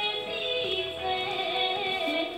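A song playing: a sung melody with held, gently wavering notes over instrumental accompaniment.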